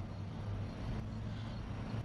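Low steady hum inside a car's cabin, with no other event standing out.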